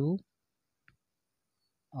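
A spoken word trails off, then near silence broken by a single short, faint click about a second in.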